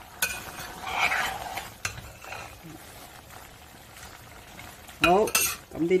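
A metal wok spatula stirring and scraping through thick braised beef brisket and radish in a clay pot, with the sauce sizzling as it simmers. The stirring is loudest during the first two seconds, then quieter.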